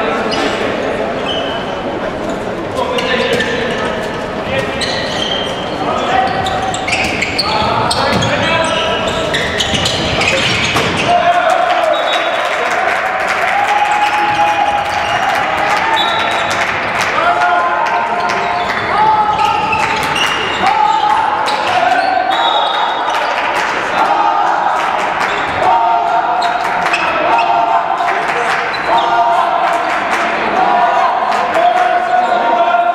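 A handball bouncing on a sports-hall floor amid players' shouts, all echoing in a large hall. From about eleven seconds in, a tune of held notes that step up and down runs over the play.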